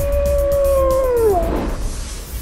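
A wolf howl used as a logo sound effect: one long, steady call that bends down and fades about a second and a half in, over music with a deep low rumble.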